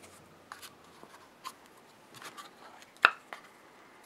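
Faint clicks and scrapes of a small plastic screw-top jar and its lid being handled, with one sharper click about three seconds in.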